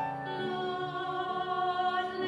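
Music: classical-style singing, with a note changing about half a second in and then held.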